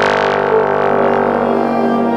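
Wind orchestra playing one loud chord, held steadily throughout.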